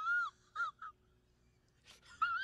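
A man's high-pitched, wavering whimper that breaks off a moment in, followed by two short squeaks, then a brief click near the end.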